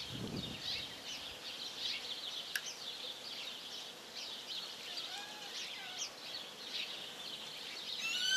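Small birds chirping repeatedly in the background over a steady outdoor hum, with one sharp click about two and a half seconds in.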